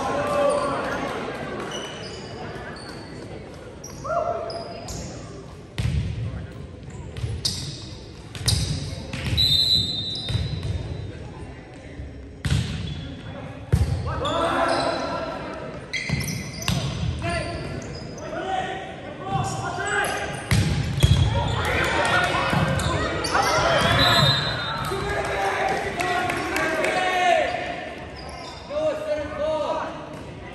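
Volleyball play in an echoing gym: the ball thumps on the hardwood floor several times and is struck with sharp smacks. Players shout and call out during the rally in the second half.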